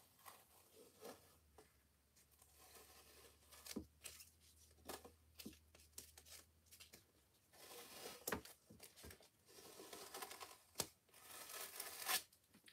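Adhesive mesh silkscreen stencil being slowly peeled off a painted sign: faint rustling and crackling as it lifts from the surface, with a few soft clicks.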